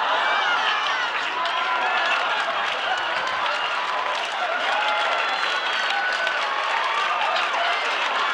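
Studio audience applauding steadily, with many voices calling out and laughing in the clapping.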